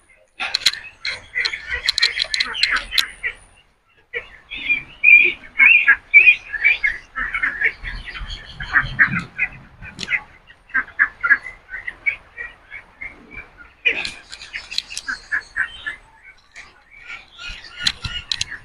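Birds chirping and calling in a busy, overlapping chatter, with a brief break about three and a half seconds in.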